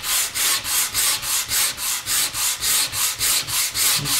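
Hand sanding block with sandpaper rubbing back and forth over a stained quilted maple guitar top in quick, even strokes, about four a second. The stain is being sanded back so the figure shows lighter.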